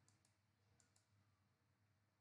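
Near silence, with a few very faint clicks in the first second from a computer mouse being clicked.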